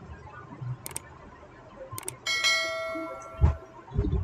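Subscribe-button animation sound effect: two sharp mouse-style clicks about a second apart, then a bell chime that rings for about a second and a half, with a short low thump under it near the end.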